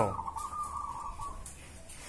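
A zebra dove (perkutut) calling from its cage hoisted high on a pole: one faint, drawn-out note that stops a little over a second in.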